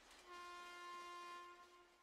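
Near silence with a faint held tone, rich in overtones, that sounds for about a second and fades out.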